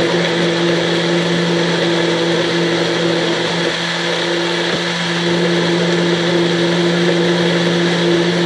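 NutriBullet blender motor running steadily, blending a green smoothie in almond milk, with a slight dip in level about halfway.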